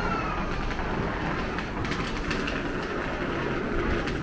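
A passing train running steadily, with a falling whine that fades out about half a second in.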